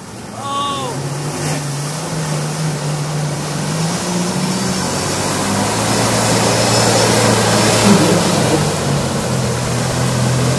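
Off-road Jeep engine pulling hard under load as it churns through deep mud, its pitch stepping up and down with the throttle, while the tyres throw mud with a rising hiss. It gets louder as the Jeep comes closer.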